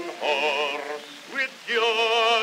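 Male singing with a wide, wobbling vibrato on a 1910 Edison Amberol wax cylinder recording, thin and without low bass. The singing drops away briefly about halfway through, then comes back loud on a held note near the end.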